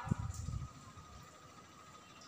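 Chalk on a blackboard as letters are written: a few soft low knocks in the first half-second, then a quiet room.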